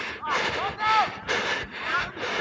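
Hard, rhythmic breathing of a rugby player running with a body-worn camera, about two breaths a second.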